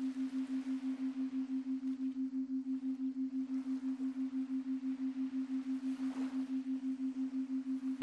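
A steady low electronic tone with a slight hiss behind it, pulsing evenly about six times a second. It is the background layer laid under a headphone affirmation recording.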